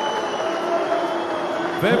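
A male announcer's amplified voice echoing through a public-address system in a large hall, over a steady background din, until he resumes speaking right at the end.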